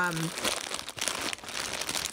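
Clear plastic bag crinkling in the hands as it is turned and squeezed, with irregular crackles.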